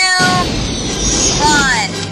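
A high voice ends a countdown, then a loud rushing noise breaks in a moment later: the staged self-destruct blast. A short, high cry rises and falls over it late on.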